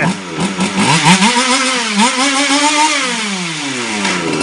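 FG Evo13 large-scale RC car's small two-stroke petrol engine revved on the throttle. Its pitch climbs, dips just after a second, climbs again and holds, then falls back steadily in the last second.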